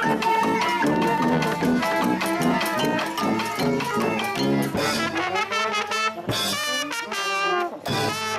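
A street brass band of tuba, trumpets, trombone, clarinet and accordion playing a lively tune. The low tuba line thins out about five seconds in, and the bright trumpet comes to the fore.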